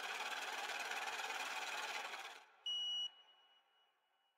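Edited-in sound effect: a steady hiss with a rapid flutter that fades out after about two and a half seconds, then a short high beep just before the three-second mark that trails away into silence.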